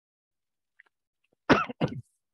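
A person coughing twice in quick succession, about one and a half seconds in.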